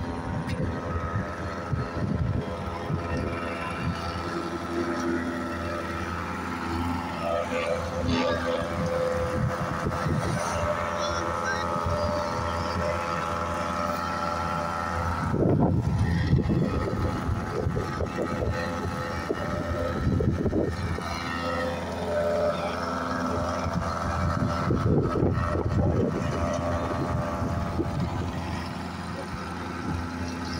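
Construction machinery running with a steady engine drone, with people's voices heard briefly about halfway through and again a few times later.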